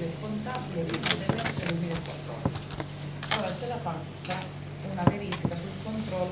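Indistinct voices talking in the background, with scattered sharp knocks and clicks over a steady low hum.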